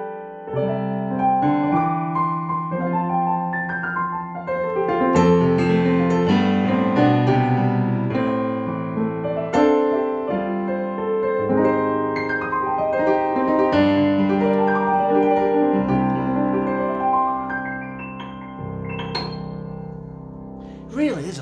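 Roland FP-30X digital piano played on its acoustic-piano sound: a continuous passage of chords under a melody, growing softer over the last few seconds, with a few high treble notes near the end.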